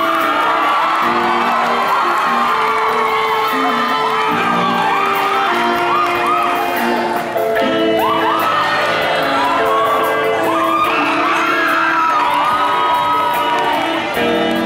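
Live band playing a slow pop ballad with sustained chords, while an audience whoops and screams over the music in many short rising and falling cries.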